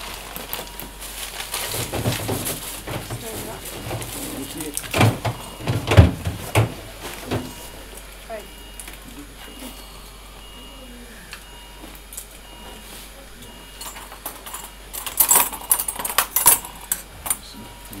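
Clicks, knocks and clatter of surgical instruments and sterile packaging being handled. The loudest knocks come about a third of the way in and another flurry comes near the end, with short, evenly repeated electronic beeps through the middle.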